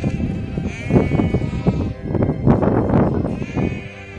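Sheep bleating in the pen, several calls overlapping, loudest in the second half.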